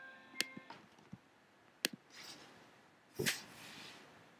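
Soft musical tones from an online math lesson video's soundtrack, stopping under a second in, followed by two sharp clicks and two short rushes of noise, the second louder, near the end.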